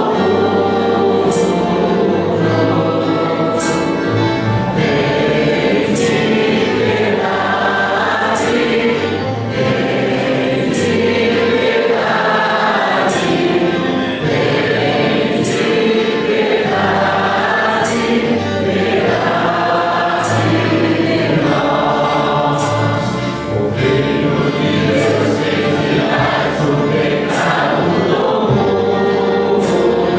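A choir singing a church hymn, with a sharp percussion tick about every two seconds.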